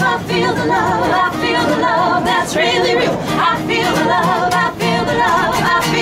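Two women singing live, holding notes with vibrato, over an acoustic guitar.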